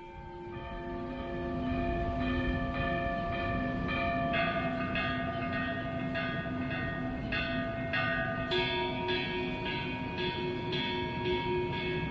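Church bells pealing: several bells of different pitches struck in a steady run of about two strokes a second, each tone ringing on and overlapping the next.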